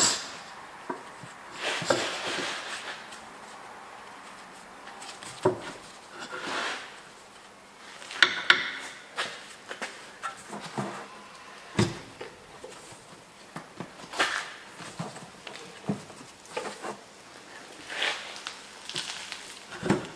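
Gloved hands working a new rubber air spring bellows into its mount at a car's rear axle: scattered rubbing and rustling, with a few sharp knocks.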